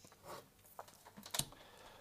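A few light clicks and taps as a small aluminium-frame model machine is moved and set down on a table, the sharpest about a second and a half in, with a faint rustle of paper.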